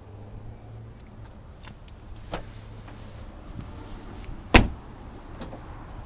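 A 2007 Cadillac CTS's rear door shutting with one loud slam about four and a half seconds in, after a few light clicks of handling. A low steady hum runs under the first three seconds.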